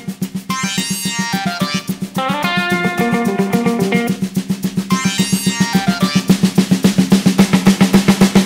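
Background music: a fast, even drum roll, about eight hits a second, under synth arpeggios that sweep up and back down twice. It builds, getting louder toward the end.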